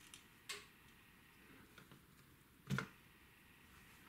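Quiet handling of a plastic Digital Compact Cassette deck mechanism. There is a light click about half a second in, then a louder knock about three-quarters of the way through as the mechanism is set down on the work mat.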